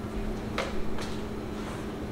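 Handheld garment steamer running with a steady low hum, just starting to give a little steam, with a couple of faint clicks as it is handled.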